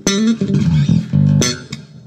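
Electric bass played through a Gallien-Krueger 410 Neo 4x10 cabinet: a short run of plucked notes with sharp, bright attacks. The amp's EQ is set flat and the new cabinet is being broken in.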